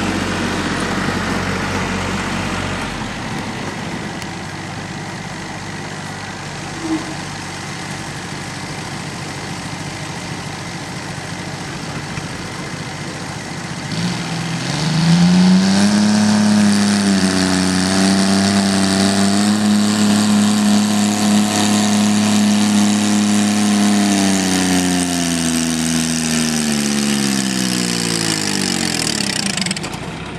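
Engine of a modified garden pulling tractor, running steadily at first, then revved hard about halfway through and held at high revs while it drags a weight sled. Its pitch wavers under the load, then the revs fall away near the end. A single short knock comes early.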